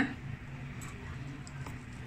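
A low steady room hum with a few faint soft clicks from hands handling a whole raw chicken on a plastic cutting board.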